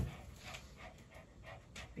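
A senior Shih Tzu panting faintly.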